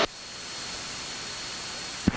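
Steady static hiss on the cockpit headset audio feed, with a faint high whistle running through it, cutting in and out abruptly.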